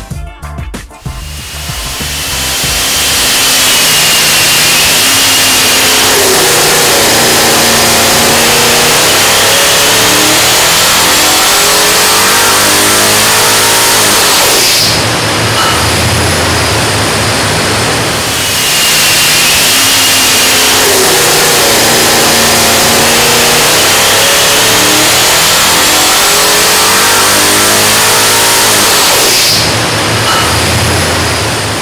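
A bored and stroked 427 cubic inch LS V8 with twin TorqStorm centrifugal superchargers, run on an engine dyno. It makes two full-throttle pulls, each about twelve seconds long. In each, the engine note and a high supercharger whine climb steadily in pitch with rpm, then cut back with a short drop between the pulls. These are the higher-boost pulls on the smaller 3.1-inch supercharger pulleys.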